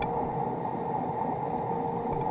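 Steady, muffled underwater noise heard through an action camera's sealed waterproof housing, with a faint steady hum beneath it.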